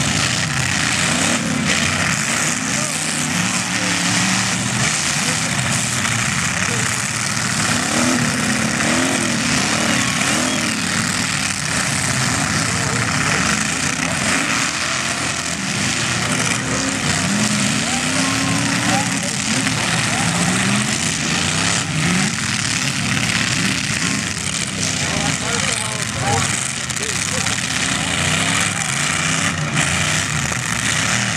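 Several demolition-derby cars' engines revving up and down amid a constant loud din, with occasional thuds of cars ramming each other.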